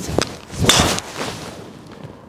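Callaway Epic Max driver striking a teed golf ball in an indoor hitting bay: a sharp hit, then a louder, noisy crack that fades over about a second. The strike sounds powerful yet muted and soft, the sound Callaway aims for in its drivers.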